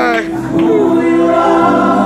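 Gospel praise team of several voices singing together into microphones, holding long notes.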